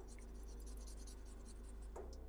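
Black felt-tip marker drawing on paper in many short, quick strokes, thickening a curved line, over a faint low steady hum.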